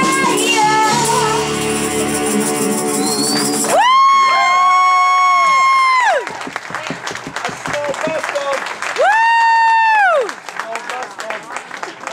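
A rock band's closing chord, with a few sung notes, ends about four seconds in. Audience clapping and two long, high-pitched cheers follow, then the clapping thins out near the end.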